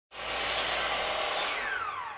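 Intro sound effect for an animated logo: a rushing, whooshing noise that starts abruptly, with a tone gliding downward in the second half as it fades.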